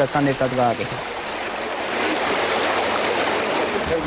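Flowing river water, a steady rushing that takes over once a voice stops about a second in.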